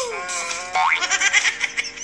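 Cartoon-style comedy sound effects: a boing-like tone that slides down in pitch, then a quick rising glide just under a second in, followed by rapidly warbling tones.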